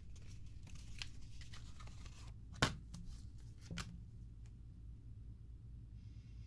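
A bar of soap being taken out of its cardboard box: crinkling and tearing of the packaging, a sharp snap about two and a half seconds in and a smaller one about a second later, then faint handling.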